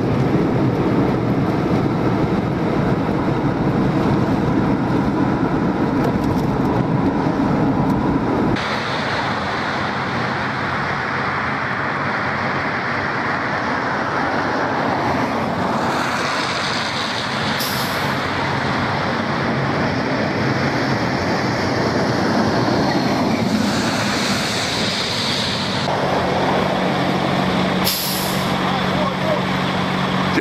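Steady road noise from a moving car, cut off about eight seconds in. Then idling fire engines with several short hisses of compressed air from their air brakes.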